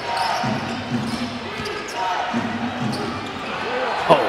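A basketball being dribbled on a hardwood arena floor, with low voices carrying through the hall.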